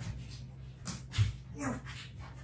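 A dog whimpering in a few short, brief cries, with a soft thump between them.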